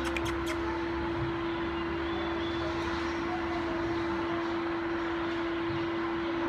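Steady machine hum with one constant mid-pitched tone over an even rushing noise, unchanging throughout; a few sharp clicks in the first half second.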